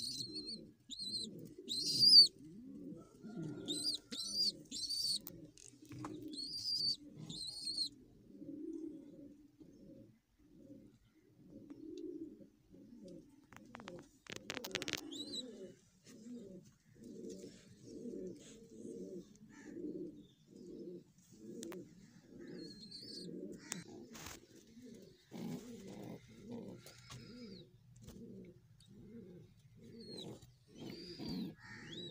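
Domestic pigeons cooing over and over, in low repeated pulses. High, sharp chirps come in the first eight seconds, and a few knocks are heard about halfway through.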